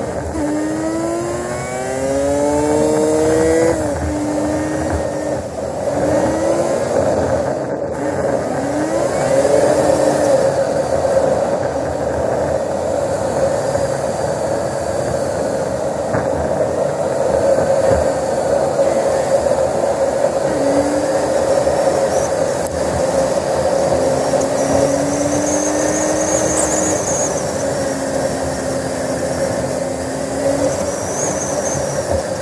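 Car engine and road noise while driving. The engine pitch climbs in steps over the first few seconds as it accelerates through the gears, then settles to a steadier cruise.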